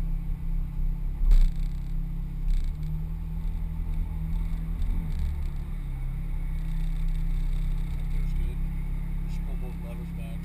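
Ferrari F430 Scuderia's V8 running steadily at low revs, heard from inside the cabin while the car rolls slowly to a stop. A single sharp knock comes about a second in.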